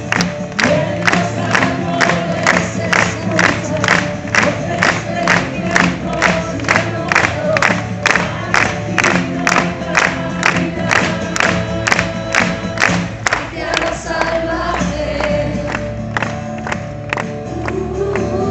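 Live acoustic-guitar song with a woman singing through a PA system, while the crowd claps along in time, about two claps a second, and sings along. The clapping dies away about fourteen seconds in.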